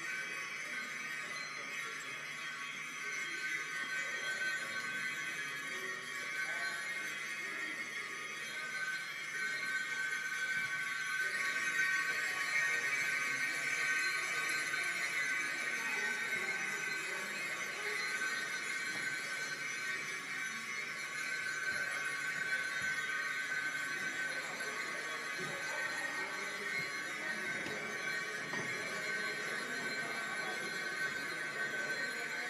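Free percussion improvisation: dense, sustained high ringing tones that shimmer steadily with no beat, swelling a little in the middle.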